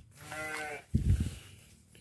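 A sheep bleating once, a single wavering call lasting under a second, followed by a short, lower sound about a second in.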